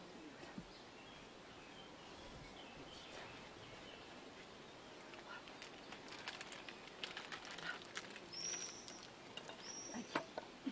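Faint quiet background with scattered small clicks and rustles of objects being handled at a table, getting busier after about five seconds. Two short high-pitched chirps come near the end.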